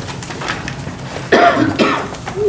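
A person coughing, two sharp coughs in quick succession about a second and a half in.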